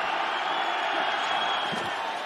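Steady stadium crowd noise from a large football crowd.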